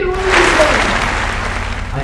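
An audience applauding, rising quickly and fading away over about two seconds, with a voice heard over the first part.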